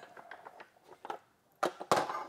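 Handling noise of metal parts being picked up and moved: faint scattered clicks and rustles, then a sharp clack near the end.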